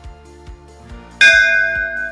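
Soft background music with a steady beat, then about a second in a loud bell chime of several bright tones that rings on and slowly fades: a notification-bell sound effect added with the subscribe-button animation.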